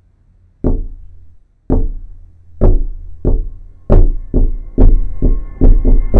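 Music cue of deep percussive hits that come faster and faster: about a second apart at first, several a second by the end, with a held tone joining in the second half.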